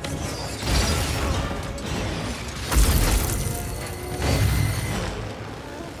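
Action-film fight sound effects: a few heavy impacts with metallic, mechanical clanks and low booms, the loudest about halfway through, over an orchestral score.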